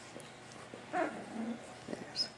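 Newborn puppy, about three weeks old, giving one short whimper about a second in, with a fainter low whine just after.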